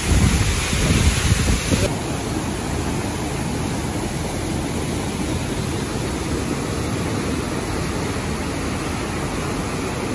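Rushing water from a waterfall and its rocky mountain stream, a steady rush. It is louder with a deep rumble for about the first two seconds, then settles into an even rush.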